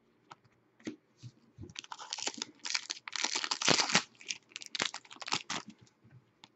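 Hockey trading cards flipped through by hand: a couple of light clicks, then from about a second and a half a fast run of cards sliding and snapping against each other.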